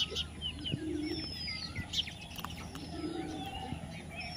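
Birds calling: a busy mix of short chirps and whistles, with a high falling whistle about a second in. Two low short notes sound around one and three seconds, and sharp clicks are scattered through.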